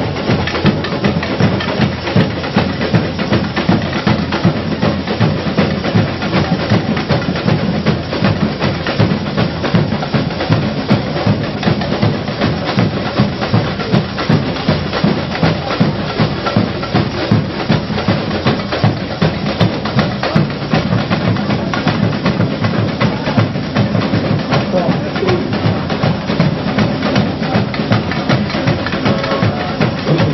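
Samba school bateria playing a samba beat: massed drums and percussion in a steady, driving rhythm with regular accents.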